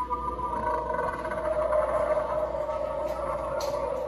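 Animatronic jack-o'-lantern prop playing its sound effect: a steady, layered droning moan that slowly grows louder, with a short hiss near the end.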